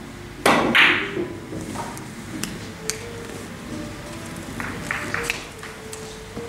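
Carom billiard balls knocking together and off the cushions as a three-cushion shot runs out: two sharp clacks about half a second and a second in, then lighter clicks as the rolling balls touch again near the end.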